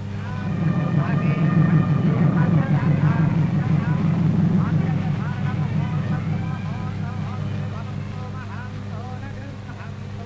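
Many voices talking at once, a crowd murmur that swells about half a second in and fades away over the following seconds, over a steady low hum in the old film soundtrack.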